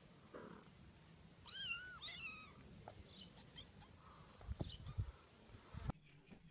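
Two short, high-pitched kitten meows in quick succession about a second and a half in, each rising and then falling in pitch. A few low thumps follow later.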